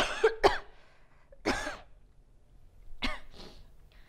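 A woman coughing several times: two sharp coughs at the start, another about a second and a half in, and a weaker one about three seconds in.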